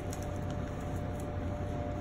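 Steady room hum of ventilation or air-handling noise, with a faint steady tone running through it.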